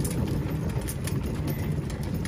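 Loaded plastic wheelbarrow being pushed over concrete: a steady low rumble from the rolling wheel, with frequent irregular clacks and rattles.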